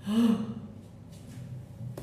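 A woman's short, loud "ah!" cry, rising and then falling in pitch, lasting under half a second.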